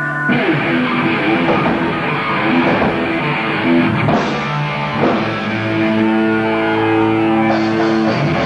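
Hardcore punk band playing live: distorted electric guitars over a drum kit. About five seconds in, a guitar chord is held and rings out, and the full band crashes back in near the end.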